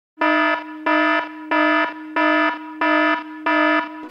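Electronic alarm tone beeping in an even rhythm: six buzzy beeps, about one and a half a second, with a fainter tone holding between them.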